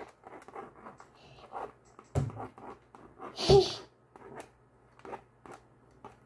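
Plastic stylus scratching and clicking against a toy magnetic drawing board as a picture is drawn: a scatter of short, light scrapes and ticks.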